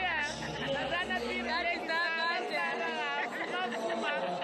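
Speech: a woman's excited, high-pitched voice talking close to the microphone, over the chatter of other people in the room.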